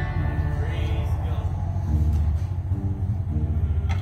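Upright bass and acoustic guitar being tuned: single low plucked notes sounded one after another, each held for up to a second and compared, with short pauses between them.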